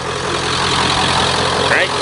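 Ford F-250's 7.3-litre Power Stroke turbo-diesel V8 idling, growing gradually louder.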